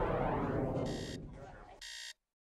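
A digital alarm clock starts beeping about a second in, two short electronic beeps about a second apart, as a swelling rushing noise fades out.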